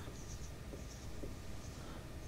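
Faint strokes of a marker writing on a whiteboard, a few short high-pitched squeaks and scratches.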